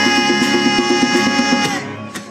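Live band music on guitars and djembe: a long chord held steady over quick hand drumming, the whole passage stopping shortly before the end.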